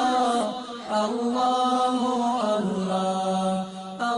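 Islamic devotional nasheed (the programme's theme song): a voice chanting in long held, wavering notes, with short breaks about a second in and near the end.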